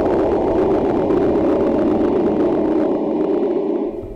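A steady rushing noise sound effect, low and dull in pitch, that drops away just before the end.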